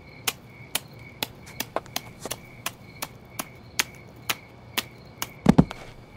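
A series of sharp taps or clicks at an uneven pace of roughly two a second, over a faint steady high-pitched hum. A heavier low thump comes near the end.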